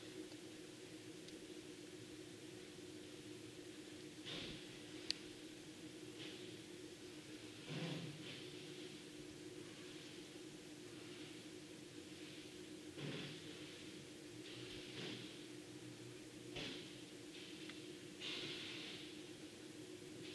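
Quiet room tone: a steady low hum with faint hiss, broken now and then by soft breaths or rustles near the microphone, and one short click about five seconds in.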